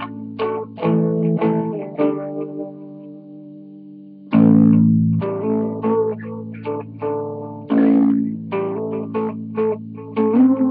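Electric guitar playing a riff of quick picked notes and chords; about two seconds in a chord is left to ring and fade, then the riff comes back in loudly a little after four seconds.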